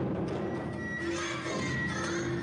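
Live Awa Odori dance music with taiko drums. About halfway through, a high, wavering melody line comes in over the ensemble.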